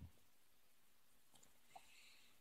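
Near silence: faint room tone with two tiny clicks near the end.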